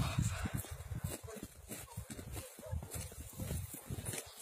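Footsteps trudging through deep fresh snow, an uneven low thudding of several steps a second.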